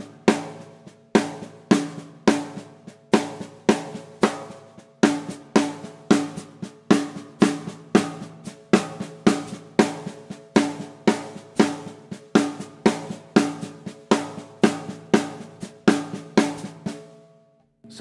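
Snare drum played with the left hand alone: a steady stream of sixteenth notes, quiet ghost notes with loud rim-shot accents grouped in sevens, over a hi-hat pedal closing on every quarter note. The playing stops about a second before the end.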